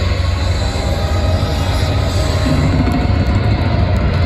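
Alternative metal band playing live through a festival PA, heard from the crowd: loud, dense distorted guitars and bass with a heavy low end and a thin held high guitar tone.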